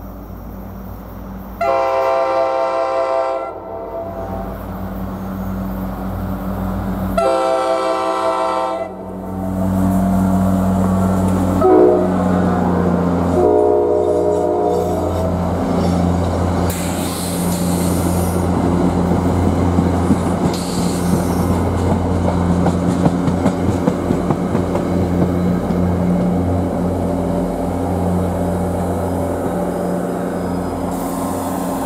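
Metro-North F40PH-3C diesel locomotive sounding its horn four times, long, long, short, long (the grade-crossing signal), as it approaches. It then passes close by with its diesel engine running and a string of NJ Transit Comet coaches rumbling and clicking over the rail joints.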